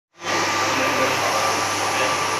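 Large-format hybrid UV inkjet printers running: a steady mechanical whir with a constant low hum and a thin steady whine above it.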